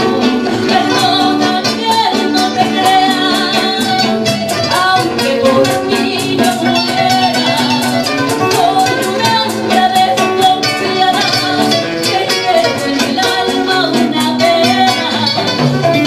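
Live rockola band: a woman sings into a microphone over guitars and a steady, busy percussion beat.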